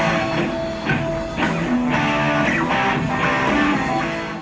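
Busker's electric guitar played through a small portable amplifier: strummed chords and picked notes in a steady rhythm, about two strokes a second.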